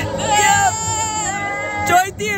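Girls' high-pitched, drawn-out vocalizing: long held wails, crying-like rather than ordinary talk, lasting over a second.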